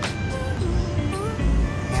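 Music with a melody and a deep bass beat, over the low rumble of a car driving slowly, heard inside the cabin.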